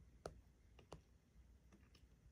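Near silence broken by a few faint clicks of a fingertip tapping a tablet's glass touchscreen while scrolling, four short ticks in two seconds.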